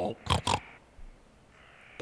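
Short pig-like vocal sounds from a cartoon pig character, two or three in the first half second.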